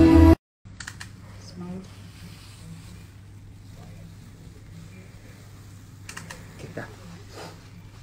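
Music cuts off abruptly, then quiet room sound: a steady low hum with faint voices and a few light clicks and taps near the end.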